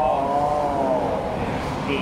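A motor vehicle engine going by, its pitch rising then falling over about the first second, under a man's talk.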